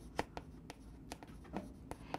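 Chalk writing on a chalkboard: a faint string of quick taps and scratches, one for each short stroke of the handwriting.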